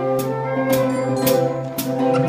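Live band playing an instrumental passage: held chords with a sharp percussion hit about twice a second.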